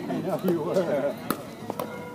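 Two sharp pops of a pickleball paddle striking the plastic ball, about half a second apart, with people talking before them.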